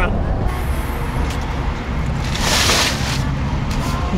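Steady low road and engine rumble heard from inside a moving Jeep, with a brief hiss a little past halfway.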